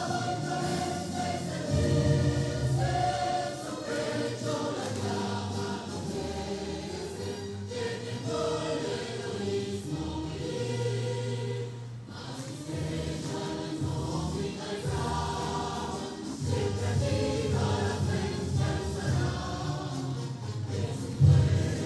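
A choir singing a solemn anthem with instrumental accompaniment, continuous throughout.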